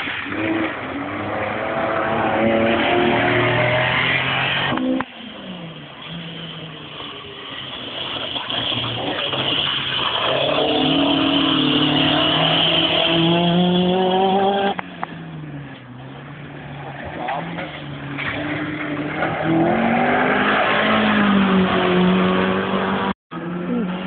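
Historic rally cars driven hard on a gravel forest stage: engines revving at full load, pitch climbing and dropping through the gears, with gravel spraying from the tyres. Three loud passes one after another, the first and last ending abruptly.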